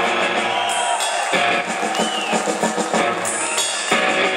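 Live rock band playing on stage, the drum kit to the fore with many quick hits and electric guitar underneath.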